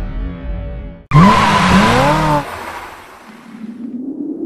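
Music ends, then about a second in a sudden loud tyre screech of a drifting car cuts in, its squeal rising and falling in pitch. It lasts about a second and a half before fading away.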